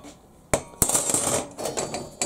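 Bent flat steel strips clinking and clattering against each other and a metal bench top as a hand shifts them: two sharp clinks about half a second in, then a short rattle.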